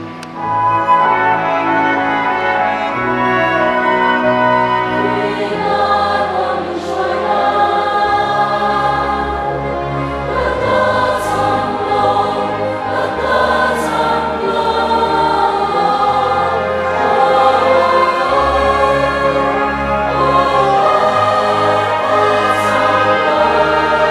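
Large mixed choir of women's and men's voices singing a hymn in harmony, over held bass notes that change every second or two. The singing swells in just after the start and stays full throughout.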